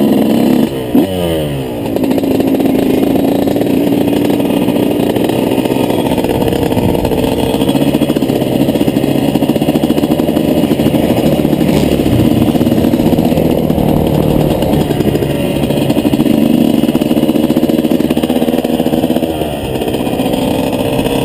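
Dirt bike engine running as it is ridden, its pitch dropping sharply about a second in as the revs fall, then holding fairly steady as the bike cruises along.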